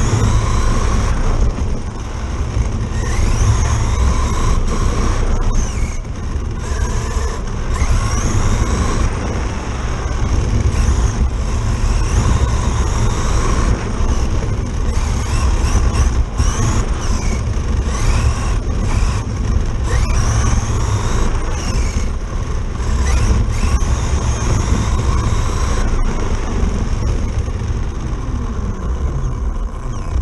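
Traxxas Slash RC truck's electric motor and drivetrain whining, rising and falling in pitch as it speeds up and slows, over heavy rumble from its tyres on wet pavement and wind on the onboard camera. The sound drops away suddenly as the truck stops, just at the end.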